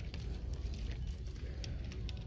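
Clothes hangers sliding and clicking on a clothing rack as garments are pushed along by hand, a few short clicks over a steady low rumble.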